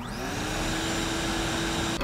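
A motor spinning up. Its whine rises over the first moment and then holds at a steady pitch, with a rushing hiss over it.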